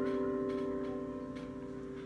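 The song's final piano chord ringing out and slowly fading away, with no new notes struck.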